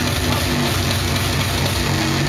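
Loud hardcore drum and bass played through a club sound system during a DJ set, with a heavy, pulsing bass line under dense upper layers.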